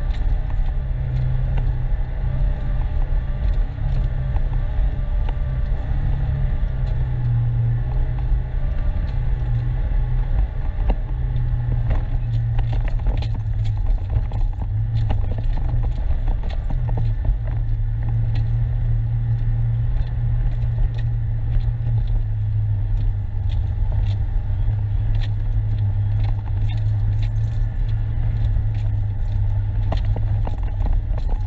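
Four-wheel-drive vehicle's engine running steadily in a low gear as it drives slowly over a rough, dry gravel track, with frequent light clicks and rattles throughout.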